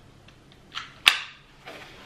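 Plastic harness buckle of a Cybex Eezy S Twist stroller clicking: a faint click, then one sharp, loud click about a second in.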